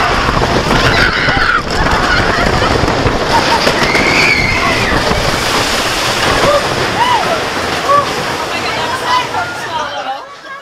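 Wooden roller coaster train running loudly along the track into the station, a steady rumbling clatter, with riders' voices over it. The noise drops away sharply near the end as the train comes to a stop.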